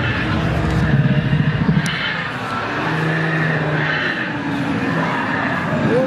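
Animatronic dinosaur roar sound effects played over exhibit loudspeakers: low, rough growls held for about a second at a time, repeating, over the general noise of a busy hall.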